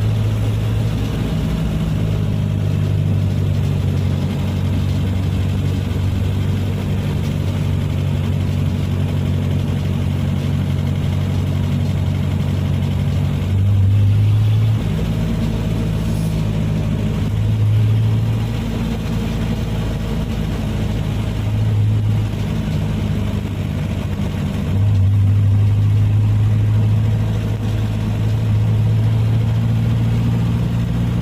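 Vehicle engine and road noise heard from inside the cabin while driving: a steady low hum that swells louder briefly a few times, then stays louder through the last few seconds.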